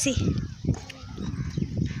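Faint talk in the background over a steady low rumble.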